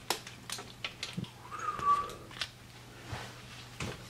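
Scattered light knocks and taps of a sandwich being put together on a kitchen counter, with a brief high tone about halfway through.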